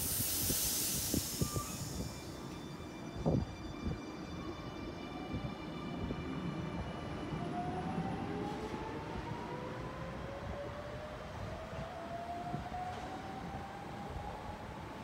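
Double-deck electric commuter train pulling away from a platform: a burst of air hiss at the start and a few sharp knocks in the first seconds, then a steadily rising motor whine as it picks up speed, over a low running rumble.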